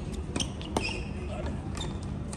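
Tennis ball struck by rackets and bouncing on the court during a rally: a few sharp pops, the loudest a little under a second in, over background voices.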